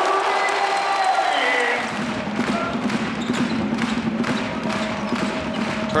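Basketball game sound: a ball bouncing repeatedly on a hardwood court, with music from the arena's speakers underneath.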